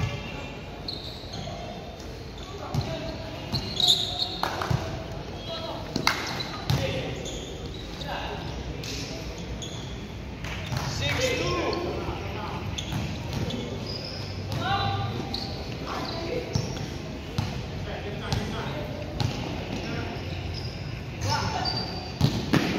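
A basketball bouncing on a gym court floor in irregular thuds as players dribble and pass, with players' voices calling out in the hall.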